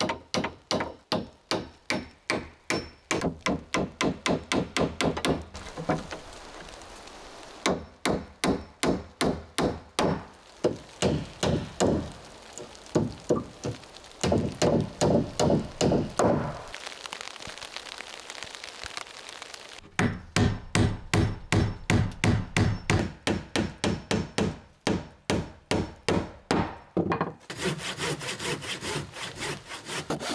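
Hand saw cutting wooden boards in several bouts of quick, even strokes, about three to four a second, with short pauses between the cuts.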